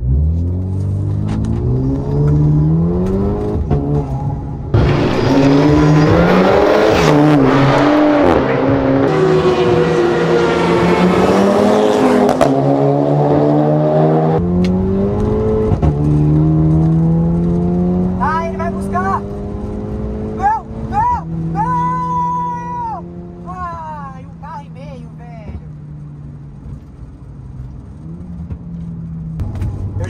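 Volkswagen Jetta's engine heard from inside the cabin, accelerating hard through the gears in a rolling drag race. The revs climb with gear changes, then a long loud stretch of full throttle mixed with wind and road noise. About 14 seconds in the throttle lifts abruptly and the engine settles lower as the car slows.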